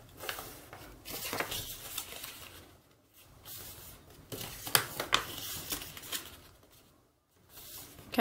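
A sheet of origami paper being folded in half and creased flat by hand: paper rustling and sliding, with short crisp strokes, in two spells separated by a brief pause.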